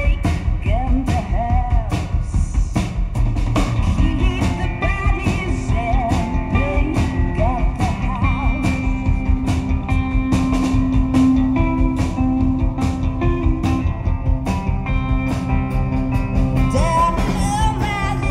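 A live band performing a song: a woman sings the lead over a steady drum beat, electric guitar and keyboards. The singing is strongest at the start and again near the end, with held instrumental notes carrying the middle.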